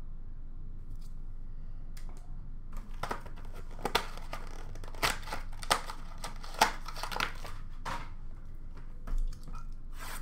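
Trading-card packaging crinkling and rustling as it is handled, in irregular sharp crackles from about three seconds in until near the end, after a couple of faint clicks.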